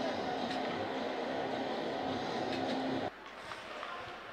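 Ice rink ambience: a steady hum and hiss with a couple of faint knocks. About three seconds in it drops abruptly to a quieter room tone.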